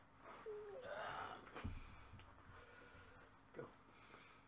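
Quiet, breathy exhale with a short rising pitch, then a soft knock and a light high rustle near the end.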